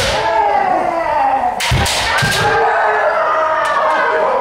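Kendo kiai: several long, drawn-out shouts from different players overlapping, with sharp cracks of bamboo shinai striking armour at the start and twice more about two seconds in.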